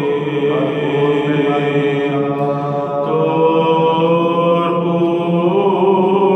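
Byzantine chant: a male cantor singing a Lenten doxastikon in long, sustained melismatic notes, the melody stepping to a new held pitch a few times.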